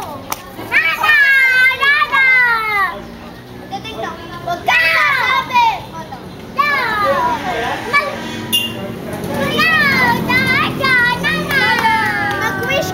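Children shouting and squealing with excitement, several high voices overlapping in waves, their pitches sweeping up and down.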